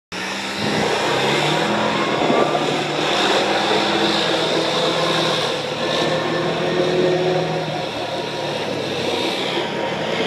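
Polaris RZR XP 900 side-by-side's twin-cylinder engine running hard and steady as the machine drifts in circles on wet pavement, with the engine pitch shifting a little as the throttle is worked.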